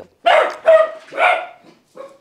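A dog barking three times in quick succession, short loud barks about half a second apart.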